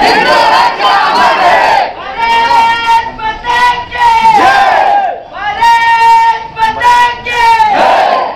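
Protest crowd chanting slogans in call and response, loud throughout: long, held shouted calls alternate with the crowd shouting back together, three times over.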